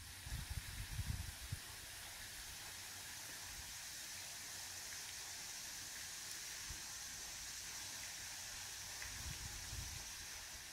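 Steady hiss of a small waterfall splashing into a lake cove, with a few low thumps in the first second or so and again near the end.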